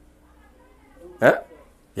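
Quiet room tone, then about a second in a single short vocal sound from a man, a brief throat or breath noise just before he starts to talk.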